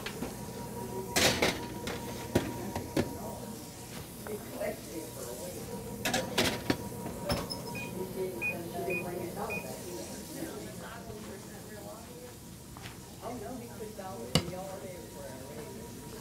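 Kitchen clatter of a baking pan and wall-oven door, a few sharp knocks, then four short high electronic beeps from the oven's control panel being set, about a second and a half of beeping, with faint voices murmuring underneath.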